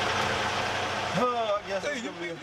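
Diesel semi truck engine idling with a steady low hum, which cuts off suddenly a little past a second in; a man's voice follows.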